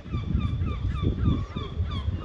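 Small birds chirping in trees: a quick run of short, curved chirps, several a second, over a low irregular rumble.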